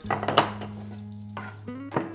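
Chef's knife chopping minced garlic on a wooden cutting board, a few sharp knife strikes near the start and again near the end, over background music.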